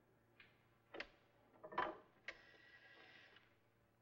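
Old telephone being readied to call the operator: a few sharp clicks as the handset is picked up and the dial is worked, then the rotary dial whirring back for about a second.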